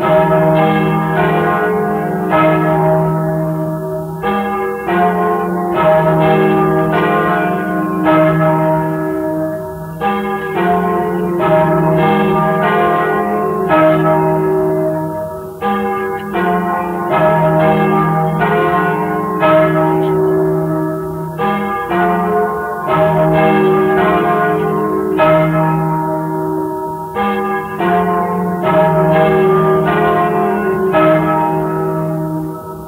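Festive peal of three large church bells of 1155, 858 and 539 kg, ringing together with many overlapping strokes and long ringing hums, coming and going in uneven clusters of a few seconds. It is heard from a 1943 78 rpm disc recording, dull with no treble.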